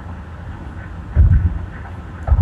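Low rumble of a moving vehicle with wind buffeting the microphone, and one louder low gust a little over a second in.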